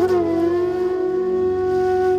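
Devotional song music: a flute melody slides down onto one long held note over a steady accompaniment.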